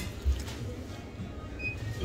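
Faint background music over a low rumble of room noise, with a dull low thump about a quarter second in.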